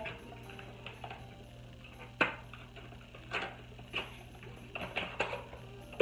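Handling noises as a plastic bottle is taken out of its cardboard box: a handful of separate clicks and knocks, the sharpest about two seconds in.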